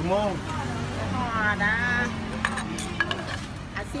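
Light clinks and knocks of kitchen utensils and dishes, several sharp ticks in the second half, under a woman's talk.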